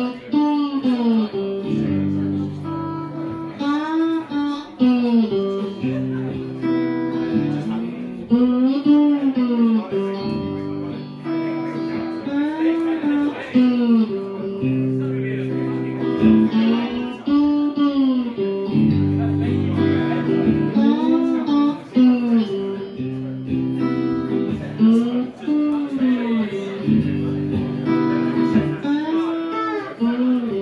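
Live band playing an instrumental passage: held guitar chords and bass under a lead line whose notes bend up and fall back, repeating every couple of seconds.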